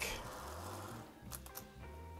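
Faint background music under quiet room tone, with a couple of light clicks a little past the middle.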